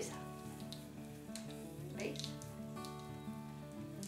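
Hands rubbing together to scrub off a dried flour hand mask, making a faint dry, scratchy rustle as it crumbles into little balls that drop onto the table. Soft background music with held notes plays underneath.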